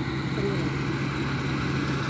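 New Holland combine harvester running steadily, a continuous low hum with an even wash of machine noise.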